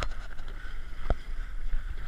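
A dragon boat paddle stroke in the water beside the hull, with wind buffeting the microphone and one sharp knock about a second in.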